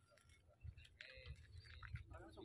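Near silence: faint outdoor background with a low rumble and a few faint high chirps or tones in the second half.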